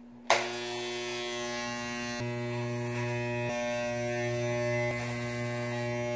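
Corded electric hair clippers switching on with a click and then running with a steady buzz.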